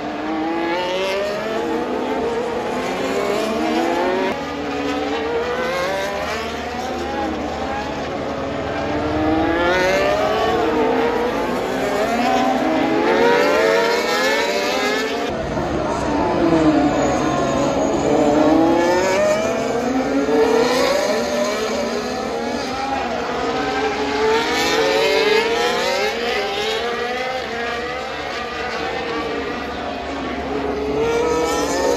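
Formula 1 cars' turbocharged V6 engines passing one after another, several at once, each note climbing and dropping in pitch as they accelerate and shift gears.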